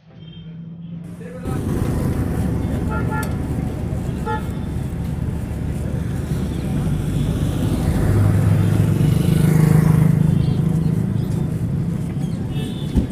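Road traffic running steadily, with two short horn toots about three and four seconds in and voices. A vehicle engine swells louder around the ninth and tenth second.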